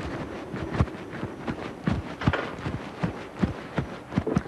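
Footsteps of a person running, a quick uneven series of footfalls.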